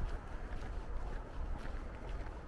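Wind rumbling on the microphone, with faint footsteps on a gravel path.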